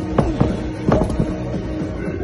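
Background music with two sharp knocks, one near the start and one about a second in: a weight plate set down on the gym floor.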